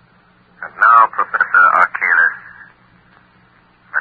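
A voice speaking for about two seconds in the middle, loud and narrow-band like an old radio broadcast recording, over a faint steady low hum.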